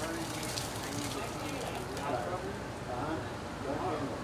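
Indistinct voices of people talking some way off, over a steady low background hum, with light crackling in the first couple of seconds.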